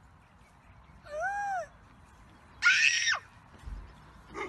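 A young child's high-pitched cry that rises and falls, about a second in. A louder, shrill scream follows near three seconds and drops in pitch as it ends.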